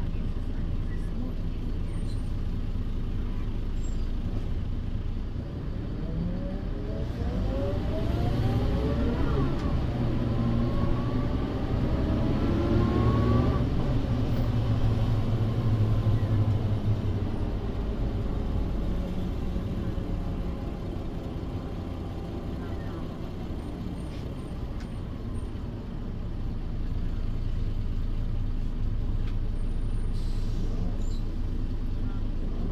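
Interior sound of a 1992 Mercedes-Benz O405 city bus under way: its OM447h diesel engine running, with whine from the ZF 5HP500 automatic gearbox and rear axle rising in pitch as the bus picks up speed, louder in the middle and cutting off about halfway through. After that, a steadier, somewhat quieter running noise.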